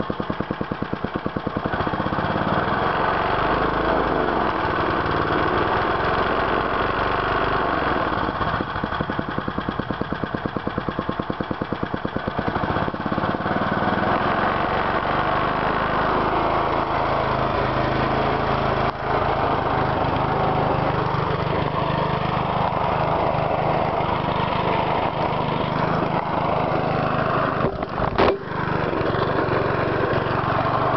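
Early-1970s Briggs & Stratton single-cylinder engine on an old push mower, running at a very low idle where the separate firing beats can be heard, its speed wavering now and then. There is a brief knock near the end.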